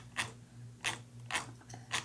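A computer mouse clicking, about five short, sharp, irregularly spaced clicks, over a faint steady hum.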